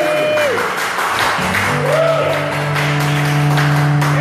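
Audience applauding, with a couple of rising-and-falling cheering calls, over sustained guitar notes ringing on from the performer's pedalboard.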